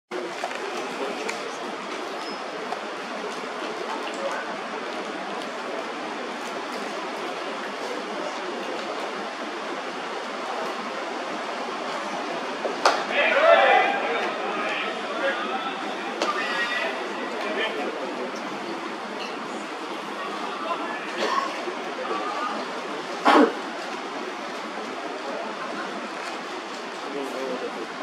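Ballpark crowd chatter throughout. About halfway through comes a sharp crack of the bat hitting a ground ball, followed at once by a short burst of shouting from the crowd; a second sharp knock follows some ten seconds later.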